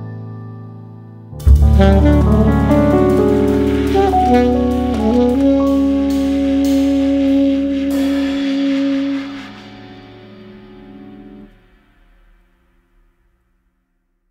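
Instrumental jazz with saxophone over a band. A chord dies away, then about a second and a half in the band comes in loudly for a closing phrase and holds a final chord. The music fades out, and the track ends in silence about twelve seconds in.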